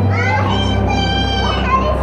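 A high-pitched wordless cry from a single voice, rising and then held for about a second and a half, over the murmur of a crowd and a steady low hum.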